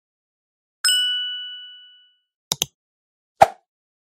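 A single bright bell-like ding that rings and fades away over about a second, followed by two quick clicks and then a duller knock, with dead silence between them.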